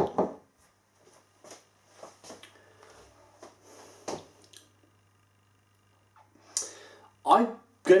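A man pausing in thought in a small room: faint mouth sounds and small clicks, a breath drawn in near the end, then his speech begins.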